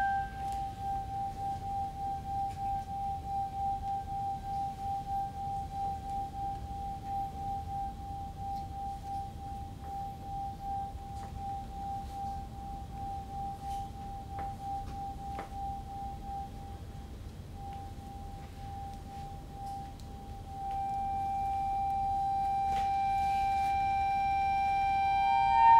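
A single sustained high tone that pulses evenly, about two to three times a second, and slowly fades. About twenty seconds in, a louder, steadier tone with overtones takes over at the same pitch.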